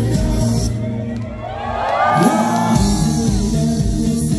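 Live pop ballad with band backing and a male singer on microphone, amplified through an outdoor PA; the band thins out briefly about a second in, then high gliding vocal lines rise over it and the full band returns, with crowd cheering mixed in.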